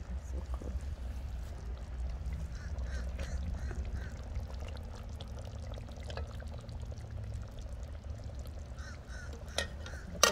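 Metal ladle scooping beef curry from a large pot, the liquid sloshing, with a few light clinks of the ladle against the pot, over a steady low rumble.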